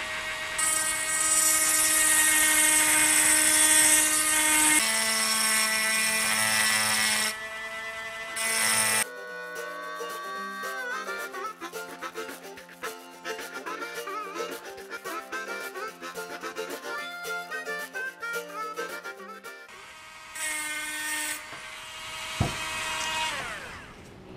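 Dremel Micro rotary tool with a diamond wheel point running at about 20,000 RPM and etching glass: a steady high whine with a gritty hiss, dropping in pitch about five seconds in. After about nine seconds it gives way to background music. The tool's whine comes back briefly near the end.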